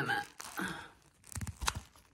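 Camera handling noise: clothing rubbing and scraping over the microphone while the camera is carried, with a couple of sharp knocks about a second and a half in.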